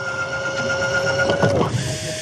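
Electric trolling motor running with a steady whine. It stops about one and a half seconds in and starts again at a slightly higher pitch.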